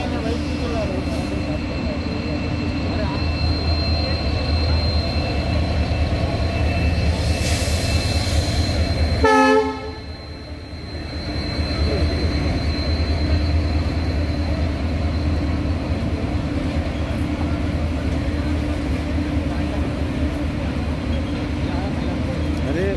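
Train running with a steady low rumble. A short horn blast sounds about nine seconds in, after which the level briefly drops.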